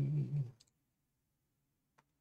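A single computer mouse click just after a word trails off, then near silence with another faint click at the very end.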